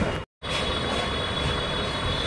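Steady background room noise, a low rumble with hiss, broken about a quarter second in by a brief moment of complete silence where the recording is spliced.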